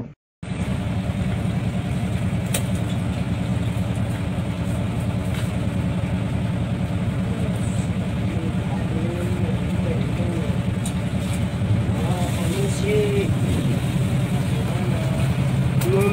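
A fishing boat's engine running steadily with a low, even drone.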